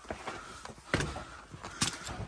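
Three short knocks with rustling between them, the loudest about a second in and another near the end: cardboard boxes and clutter being handled and shifted.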